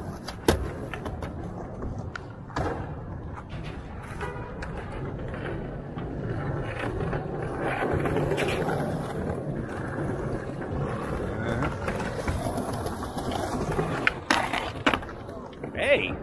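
Skateboard wheels rolling over concrete paving, growing louder around the middle as a skater passes close, with a few sharp knocks.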